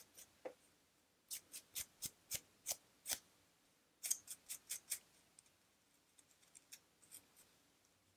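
Fingernails or a comb scratching through hair on a dry, flaky scalp in short, crisp strokes. About seven strokes come between one and three seconds in, a quicker run of five follows around four seconds, and then fainter strokes.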